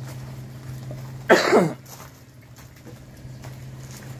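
A single loud cough about a second in, dropping in pitch as it ends, over a steady low hum.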